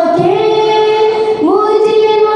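A young woman singing a naat, a devotional song, solo and unaccompanied into a microphone. She holds long notes and glides up to a higher note about halfway through.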